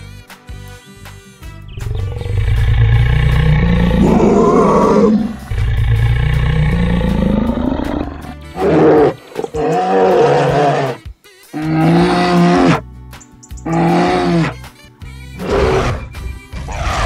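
Lion roar sound effects over children's background music: two long roars, each rising in pitch, then a run of four or five shorter roaring calls with short gaps between them.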